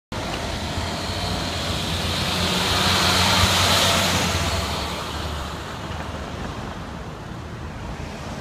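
A box truck driving past close by: its engine and tyre noise swell to a peak about three and a half to four seconds in, then fade as it moves away up the street.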